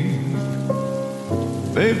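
Sustained backing chords held between sung phrases, with the hiss of a rain sound effect mixed under them. A male voice comes in with a rising note near the end.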